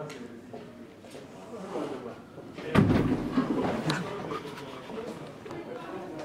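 Indistinct voices, then about three seconds in a sudden loud thud from a heavy glass entrance door being pushed open, with a few knocks after it.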